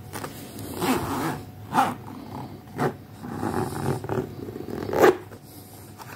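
Suede and leather boots being handled: short scuffing and rubbing noises in four quick bursts with rustling between them, the loudest about five seconds in.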